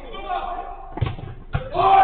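A football struck twice during five-a-side play, two sharp thuds about half a second apart, with players' voices shouting, loudest near the end.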